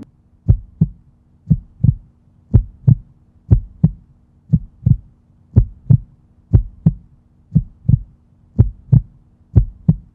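Heartbeat sound effect: steady double thumps (lub-dub), about one beat a second, over a faint low hum.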